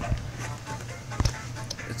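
Soft background music with a steady low hum, and one sharp wooden knock about a second in, as of a wooden building block touching the block tower.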